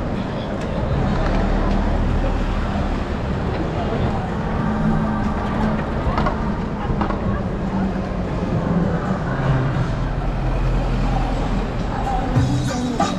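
Busy city street ambience: steady traffic noise with the voices of passers-by in the crowd.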